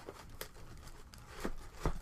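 Rustling and crinkling of packing material in a cardboard box as soldering station parts are put back in, with a few light knocks, the heaviest a dull thud near the end.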